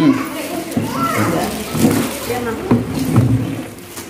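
Several people talking over one another in indistinct background chatter.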